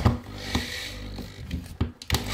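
Sharp clicks and knocks as a cordless drill-driver and screw are set against a plasterboard wall, ready to drive into the wooden batten behind it, over a low hum. The loudest taps come at the start and near the end.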